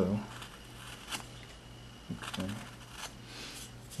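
A few faint scrapes and clicks of a small carving knife cutting and paring wood on a hand-held carving block, with a low steady hum underneath.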